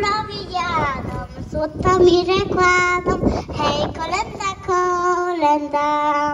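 A group of children singing a Polish Christmas carol (kolęda) in unison, holding sustained notes that step from one pitch to the next.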